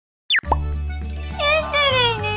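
A quick falling 'plop' cartoon sound effect opens a short children's music jingle. It has steady low notes, and a high, sliding voice comes in about halfway through.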